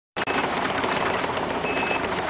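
Compact tracked excavator working: steady engine noise with a dense, rapid mechanical clatter.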